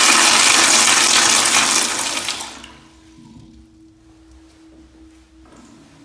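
Kohler child-size toilet flushing: loud rushing swirl of water down the bowl that cuts off quickly about two and a half seconds in, leaving a faint steady hum.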